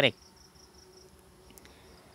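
Faint, steady high-pitched insect chirring that pulses evenly, with a single light click about one and a half seconds in.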